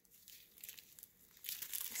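Small clear plastic zip bags of diamond-painting drills crinkling as they are handled, faint at first and louder near the end.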